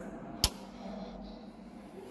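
A single sharp click about half a second in, from a button on the Hawker Sea Hawk's control column grip being pressed with the gun safety set to fire. Faint, steady background otherwise.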